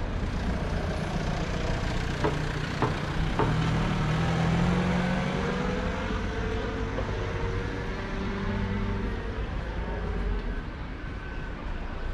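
Street traffic: a motor vehicle engine running and passing over a steady low rumble, its tone slowly shifting in pitch between about four and nine seconds in.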